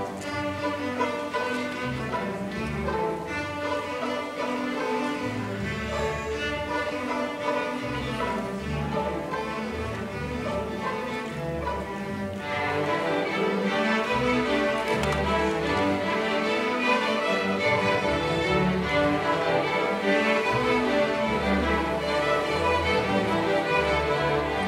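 A student string orchestra playing a piece together, with violins, cellos and double basses bowing, heard from the audience seats of an auditorium. The music grows louder about halfway through.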